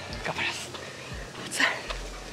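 A man breathing hard and breathy close to the microphone, with two stronger gusts of breath about a second apart: a runner recovering between fast interval repetitions.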